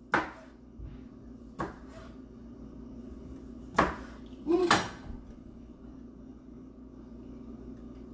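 A kitchen knife knocking on a cutting board in a few separate cuts, four sharp knocks spread over several seconds, the last two close together. A steady low hum runs underneath.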